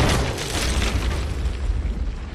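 A large outdoor explosion: a sudden blast, then a deep rumble that carries on through the next two seconds.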